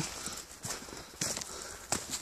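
Footsteps walking over a leaf-covered forest floor: several separate steps, the last near the end the sharpest.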